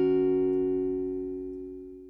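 Acoustic guitar's final chord ringing out and slowly fading away to silence at the end of the song.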